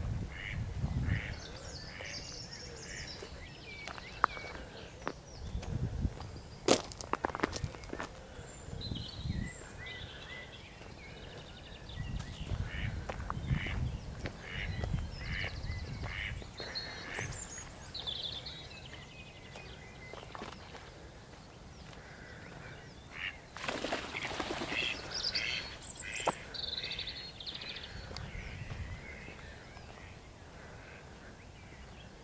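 Birds calling and chirping around a pond, with intermittent low rumbles and a few sharp clicks about a quarter of the way in.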